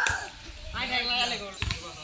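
A football striking hard dirt ground: a single dull thud about one and a half seconds in.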